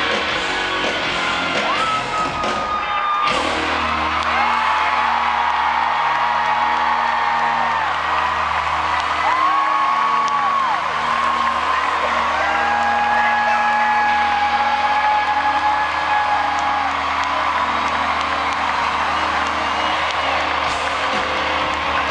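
Live rock band playing an outro of long held, bending tones over a steady low bass drone, with the crowd whooping.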